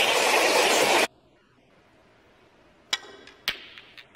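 Audience applause that cuts off abruptly about a second in. Near the end come two sharp clicks of snooker balls being struck, about half a second apart, the first with a brief ring.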